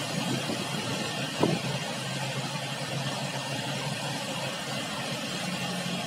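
Fast river water rushing through whitewater rapids around the concrete piers of a dam, a steady, even rush of noise.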